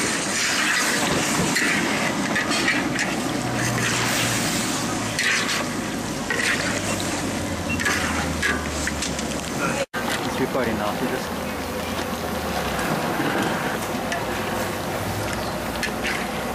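Metal spatula and perforated skimmer scraping and stirring raw chicken pieces in a large steel wok, in repeated strokes, with the chicken frying over a turned-up flame. Voices chatter in the background, and the sound drops out for an instant about ten seconds in.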